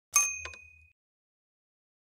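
A single bright bell-like ding sound effect with a click at its start, ringing for under a second as it fades.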